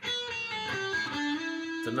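Yamaha Pacifica electric guitar playing a short blues-scale phrase. A few quick single notes lead to a slide on the G string from D at the 7th fret up to E at the 9th fret, and the E rings on.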